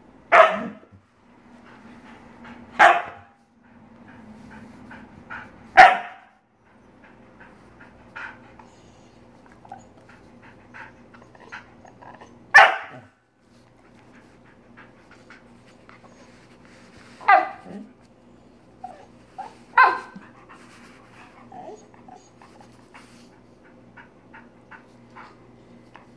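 Siberian husky barking at a hand approaching her: six short, sharp barks spaced a few seconds apart, with softer small sounds between them.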